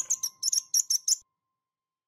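A quick run of short, high-pitched bird-like chirps, about seven a second, over the fading ring of a chime note, stopping about a second in: a cartoon bird chirp sound effect closing an intro jingle.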